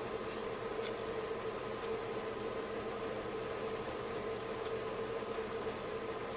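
Steady, faint electrical hum made of a few fixed tones, with a few soft ticks.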